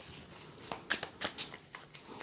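A deck of tarot cards being shuffled by hand: a quick, irregular series of soft card clicks and slides.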